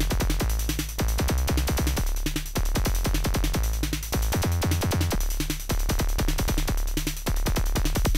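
Make Noise 0-Coast synthesizer playing a kick drum and bassline hybrid. Rapid clicky kick hits run over deep bass notes that change pitch every half second or so, in a sequenced electronic groove.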